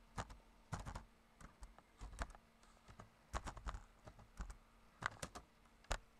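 Typing on a computer keyboard: a string of irregular keystrokes, some in quick runs and some single, with short pauses between them.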